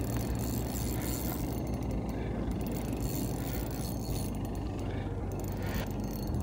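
Spinning reel being cranked while a walleye is reeled in against a bent rod, over a steady low hum.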